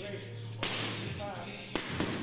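Two punches landing on boxing focus mitts, each a sharp slap, about a second apart.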